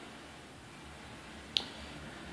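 A single short click about one and a half seconds in, a fingertip tapping the touchscreen of a Nokia Lumia 630, over faint room tone.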